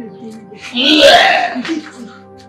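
A person's loud vocal outburst, lasting under a second, about a second in, over background music with steady held notes.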